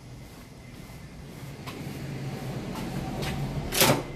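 Footsteps approaching a glass entrance door, then one loud clack as the door is opened just before the end, over a low hum that grows louder.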